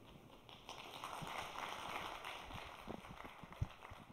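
Footsteps on a stage as a person walks off, a few irregular soft knocks, over faint scattered applause that swells and fades.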